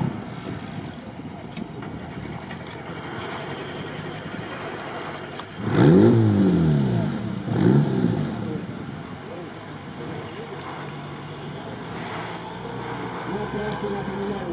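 Engine of a vintage off-road 4x4 running on a sandy course, with two hard revs about six and eight seconds in, the pitch climbing and falling each time.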